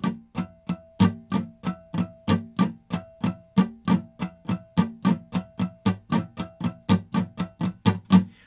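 Acoustic guitar strummed in a steady rhythm, about four strokes a second, with the strum divided into two string sets: the low E and A strings hit like a kick drum on beats one and three, and the higher strings in between like snare and hi-hats.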